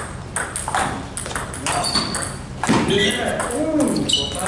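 A NEXY table tennis ball clicking off paddles and the table in a quick run of sharp ticks, several a second, through the first half.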